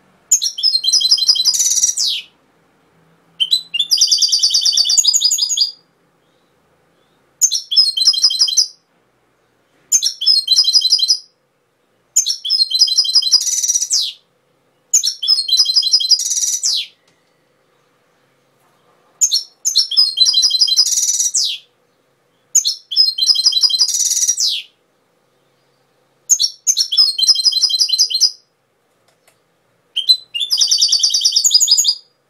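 European goldfinch singing: nine phrases of rapid, high-pitched twittering, each about two seconds long, separated by short silent pauses.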